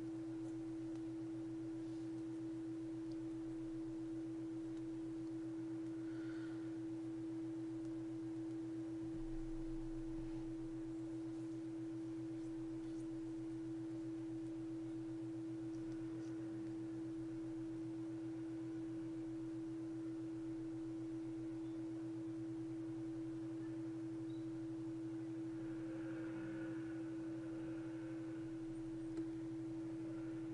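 Faint steady hum holding one clear pitch, with a lower buzz beneath it; it does not change.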